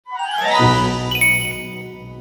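A short logo jingle: a cluster of chime and twinkle tones over a low swell, with a bright ding about a second in, then fading.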